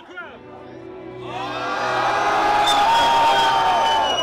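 Concert crowd cheering and screaming, swelling up about a second in and staying loud, with a held high yell riding over it.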